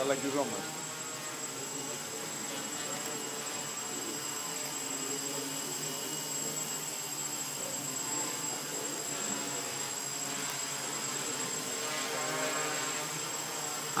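Small quadcopter hovering, its electric motors and propellers buzzing steadily in several even tones.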